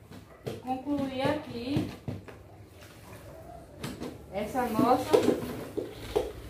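Indistinct talking, a child's voice among it, in two stretches, with a few short knocks between them from a mop being handled in a plastic spin-mop bucket.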